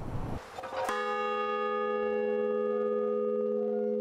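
A large hanging bell struck once about a second in, then ringing on with a steady, sustained tone made of several pitches.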